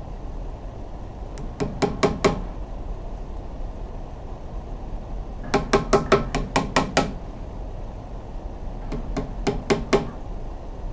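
A hammer driving nails into a tree trunk in three bursts of quick blows: about five near the start, a run of about eight in the middle, and about five more near the end. Each blow has a short ring.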